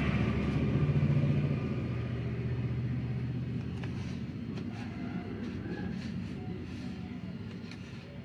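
A motor vehicle's engine running with a low rumble that fades gradually over the seconds, as if moving away. Faint rustling of paper being rolled in the second half.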